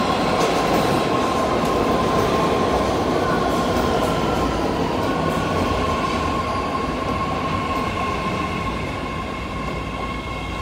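BART Fleet of the Future subway train pulling into an underground station platform and slowing down, with steady wheel rumble and a steady high whine. The train grows a little quieter near the end as it nears a stop.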